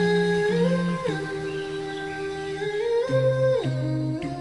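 Background vocal humming: layered voices holding long notes in harmony, stepping up and down in pitch together every second or so.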